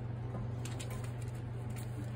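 Faint crinkling of a sheet of holographic craft foil being handled, over a steady low hum.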